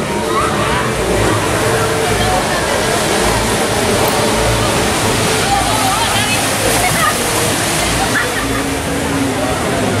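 Rushing, churning water of a river-rapids raft ride's channel, a steady loud rush, with people's voices chattering underneath.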